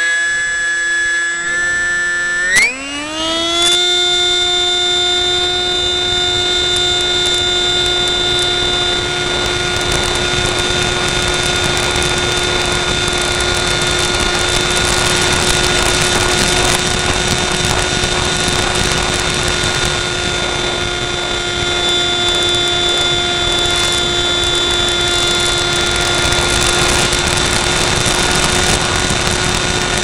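Parkzone F-27Q Stryker's electric motor driving its pusher propeller: a whine that climbs sharply in pitch about two and a half seconds in as the throttle opens, then holds a steady pitch under power in flight.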